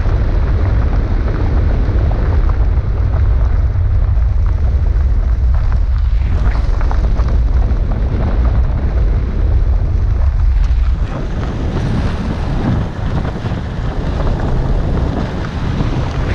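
Wind buffeting the microphone of a camera mounted outside a car driving on a gravel road, a heavy low rumble with grainy road noise over it. The low rumble drops off about eleven seconds in.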